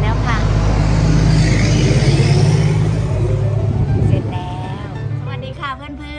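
A motor vehicle passing close by, a low engine and road rumble that swells to its loudest about two seconds in and fades away by about five seconds.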